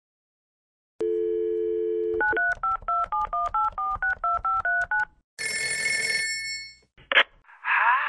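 Telephone call being placed: a landline dial tone for about a second, then a quick run of about a dozen touch-tone (DTMF) dialing beeps, about four a second. Then a single ring of a telephone bell, cut short as the line is picked up.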